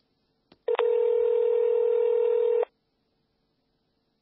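Telephone ringback tone on an outgoing call: a click, then one steady ring about two seconds long that cuts off sharply, heard through the phone line while the call waits to be answered.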